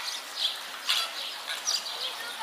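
A flock of flamingos calling, several short calls in quick succession over a murmur of outdoor background noise.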